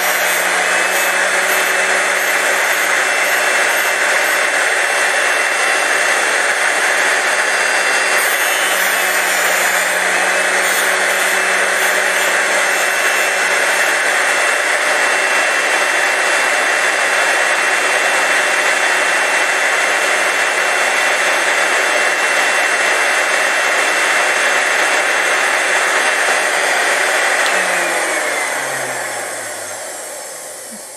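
SRD drill sharpener's electric motor and cup grinding wheel running steadily, grinding the web of a drill bit to form a split point. Near the end the motor is switched off and winds down, its pitch falling.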